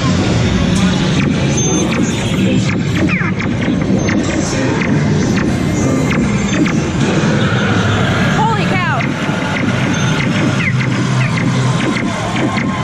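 Inside a Buzz Lightyear's Space Ranger Spin laser-blaster dark ride: the ride's soundtrack of music and voices plays loudly and steadily, with short falling electronic zaps a few times, clearest about three and nine seconds in.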